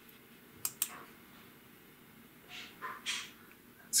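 Two short, sharp plastic clicks a little under a second in, then a few soft scuffs, from fingers handling the plastic body of a Logitech M185 mouse while a small replacement foot is positioned on its underside.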